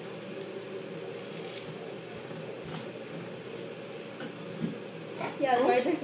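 Steady fan-like hum with faint rustles and small clicks of hands opening a packet. A voice comes in about five seconds in.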